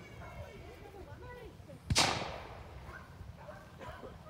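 A single gunshot about halfway through, with a short echo trailing off. This is the shot fired to mark a thrown bird for a retriever's marked retrieve.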